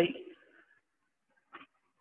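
Near silence: room tone after a voice trails off, broken once by a brief faint sound about one and a half seconds in.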